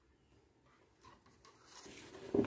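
Faint scratching of a wooden-handled awl point marking leather, with a few small clicks from about a second in and a louder rustle of movement near the end.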